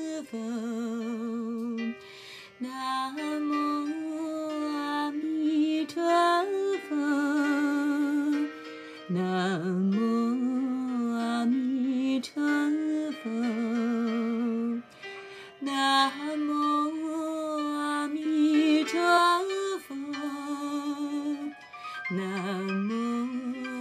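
Music: a voice singing a slow melody in long, wavering held notes, phrase after phrase, with soft accompaniment.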